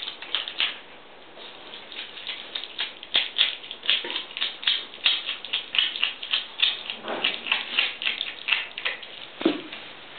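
Eurasian otter chewing and crunching a raw fish: a fast, irregular run of wet crunches and clicks, several a second, with a couple of heavier bites near the end.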